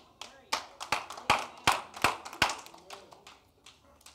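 A run of about eight sharp hand claps, roughly three a second, stopping about two and a half seconds in.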